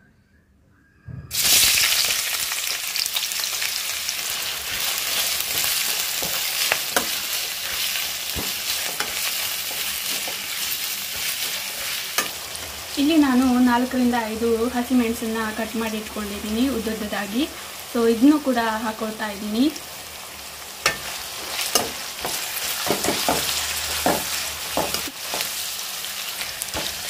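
Sliced onions frying in hot oil in a pan: a loud, steady sizzle that starts suddenly about a second in. Green chillies are added partway, and sharp taps of a spatula stirring the pan come near the end.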